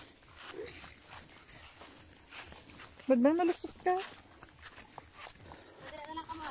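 Footsteps walking through grass, soft and irregular, with one short voiced call from a person about three seconds in.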